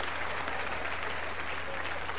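Stand-up comedy audience applauding, a steady even patter of clapping after a punchline.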